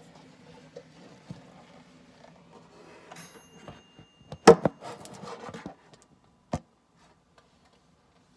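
Rustling and rubbing, then a quick cluster of knocks against wooden furniture, the loudest about four and a half seconds in, and one more thump about a second later.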